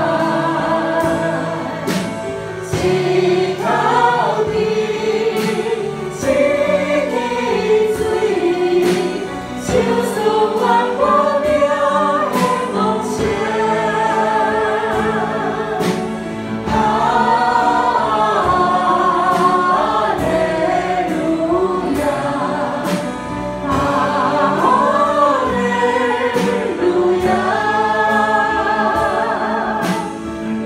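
A group of voices singing a Christian worship song in Taiwanese Hokkien, over instrumental accompaniment with a steady percussive beat.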